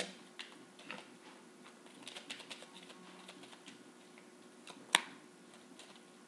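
A deck of tarot cards being shuffled by hand: a faint, quick patter of small card clicks and flutters, with one sharper snap about five seconds in.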